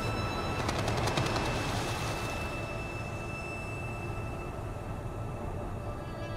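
Ambient documentary background score: sustained held tones over a low rumble, with a quick run of crackling clicks about a second in and a swell of hiss just after.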